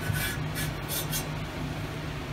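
Slab saw carriage slid by hand along its steel rails, a soft rubbing scrape mostly in the first second, over a steady low hum.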